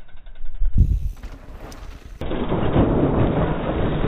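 Mountain bike riding dirt jumps: a heavy thud of the landing about a second in, then from about two seconds in a loud, rough rumble of the tyres skidding and sliding through loose gravel.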